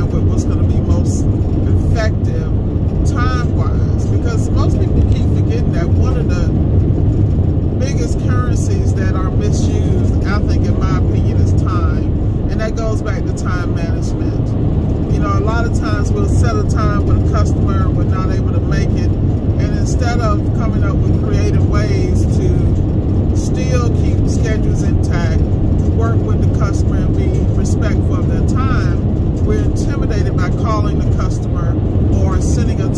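Steady low rumble of tyre and engine noise inside a car cruising at highway speed. A voice talks on and off over it.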